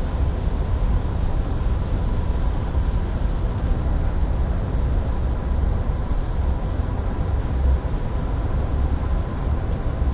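Steady low rumble of a moving vehicle heard from inside its cabin: road and engine drone with a faint steady hum over it.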